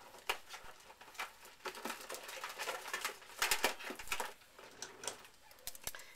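Scattered light clicks and rustles of craft items being handled and moved aside on a tabletop.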